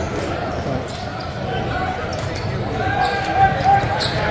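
Basketball dribbled on a hardwood court, its bounces echoing in a large hall, over a steady bed of player and spectator voices, with a short squeak near the end.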